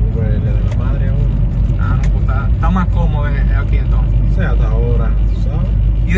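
Men's conversation inside a moving car, over the steady low rumble of the engine and road noise in the cabin.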